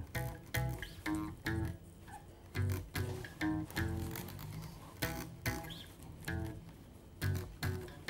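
Fender Precision electric bass playing a short riff of plucked double stops, the root with the major third above it, as separate notes in an uneven rhythm.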